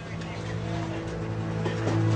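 A steady low drone of several held tones, slowly growing louder.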